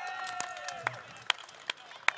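Crowd voices trailing off, then a few hand claps starting about a second in, spaced a little under half a second apart: the start of applause.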